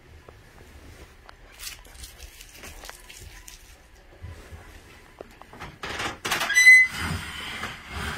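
Wooden trundle of a twin daybed being worked side to side and pushed into the frame: faint knocks and rubbing, then a louder scrape with a short high squeak near the end. The trundle is binding, grinding against the bed's wood, which the owner puts down to the wood being bent a little.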